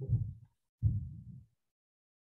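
Handling noise on a computer or webcam microphone: two low, muffled thumps about a second apart, then silence.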